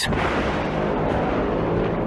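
A dramatic boom sound effect: a sudden hit that runs on as a heavy, steady rumble with a faint low drone under it.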